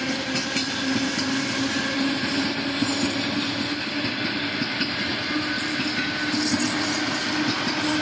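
ЭП2Д electric multiple unit running past on the tracks: wheels clicking over the rail joints over a continuous rolling rumble, with a steady hum.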